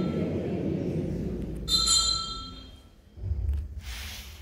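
Altar bell rung at the elevation of the host during the consecration of the Mass. A ring is dying away at the start, and a second bright ring comes in a little under two seconds in and fades within about a second, over a low background rumble.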